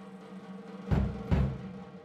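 Soundtrack music opening with a drum lead-in: two low drum hits about a second in, over a held tone.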